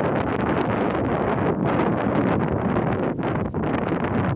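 Wind buffeting the microphone: a loud, steady rush of noise that flutters with the gusts.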